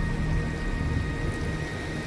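Low, fluctuating rumble of wind buffeting a phone's microphone outdoors, with faint held music notes underneath that fade near the end.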